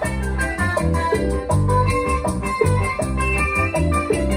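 Live Latin dance band playing with a strong bass-guitar line, congas and electric guitars over a steady dance beat, with no lead vocal in this stretch.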